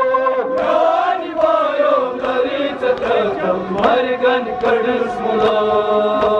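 Men chanting a Kashmiri noha refrain together in long held, wavering lines. Sharp chest-beating slaps (matam) sound through it at a regular beat.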